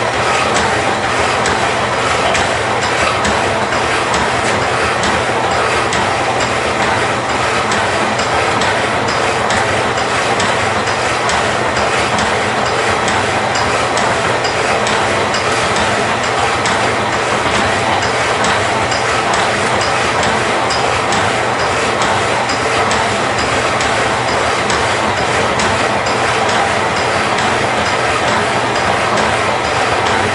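A vintage Marvel power hacksaw and a Harbor Freight horizontal bandsaw both running under power, cutting 1½ by ⅛ inch angle stock: a steady, continuous mechanical noise of motors and blades, with faint repeating clicks from the machinery.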